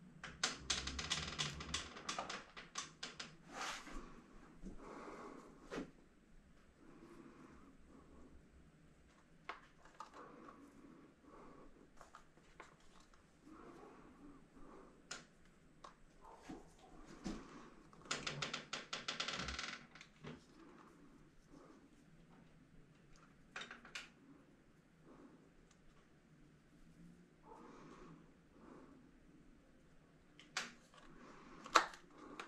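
Faint handling noise: quick runs of small clicks and rustles as fingers press seeds into the soil of a thin plastic seed-starting cell tray. The two densest runs of clicking come near the start and about two-thirds of the way through.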